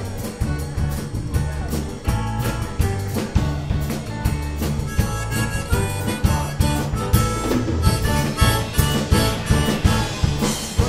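Live band playing an instrumental passage: harmonica blown into a vocal microphone, leading over strummed acoustic guitar, electric bass and a drum kit keeping a steady beat. The harmonica grows stronger from about halfway through.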